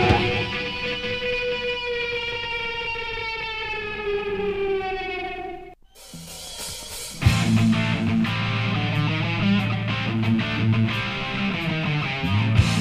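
1980s heavy metal recording: a held electric guitar note sinks slowly in pitch and fades out, with a brief silent gap about six seconds in. From about seven seconds in, a new song comes in with a loud distorted guitar riff.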